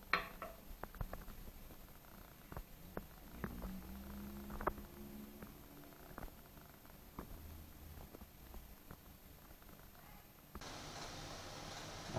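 Faint scattered clicks and taps of a small glass bottle and its cap being handled over a ceramic sink, the sharpest click right at the start, with a low rumble for about two seconds in the middle.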